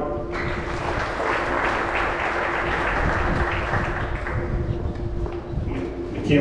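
Audience clapping, starting about a third of a second in and thinning out near the end, with a steady low tone underneath.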